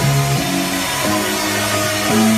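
Loud live electronic dance music from a band on keyboards and drums, its held synth bass notes changing twice.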